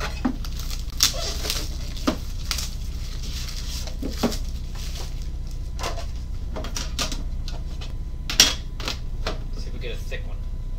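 Metal trading-card tin being handled on a table: its lid is lifted and the tin is moved about, giving scattered knocks and clicks with light rubbing between. The loudest knock comes about eight seconds in. A steady low hum lies underneath.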